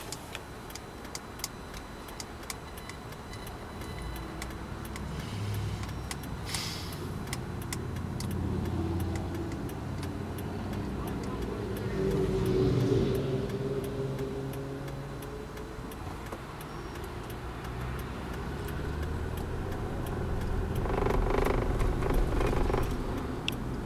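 Inside a car: a steady ticking, about two a second, for the first several seconds, then the car's engine and road noise rise as it pulls away from the light and accelerates, the engine note climbing in pitch.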